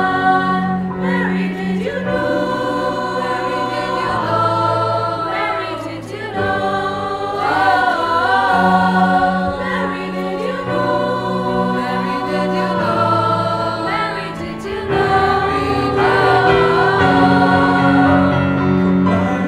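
Mixed-voice church choir of women and men singing in harmony, with held chords and voice lines moving up and down in pitch.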